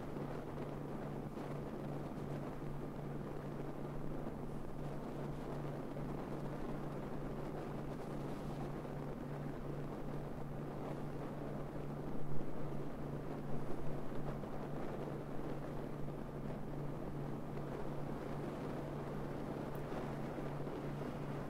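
Wind rushing over a camera microphone mounted on the roof of a moving car, with a steady low hum from the car underneath. There are louder gusts about twelve and fourteen seconds in.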